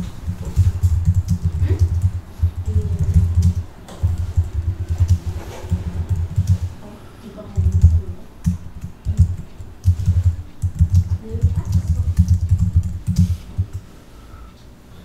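Computer keyboard being typed on in quick runs with short pauses, the keystrokes coming through as dull low thumps.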